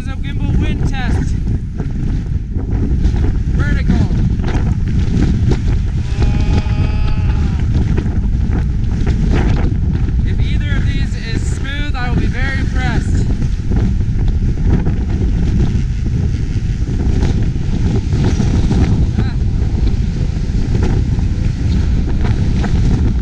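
Strong wind buffeting the camera microphone in a loud, steady rumble. People's voices call out briefly a few times over it.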